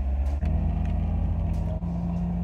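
Car engine and road noise heard from inside the cabin while driving: a steady low drone that dips briefly and then steps up a little about half a second in.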